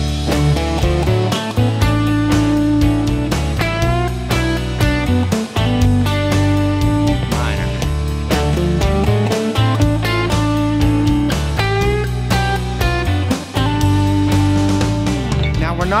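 Telecaster-style electric guitar playing a short pentatonic lick over a backing track with bass and drums: a quick run through the blue note, ending in a string bend. It is played twice, first in major pentatonic and then in minor, with the bend rising about 4 s in and again near 12 s.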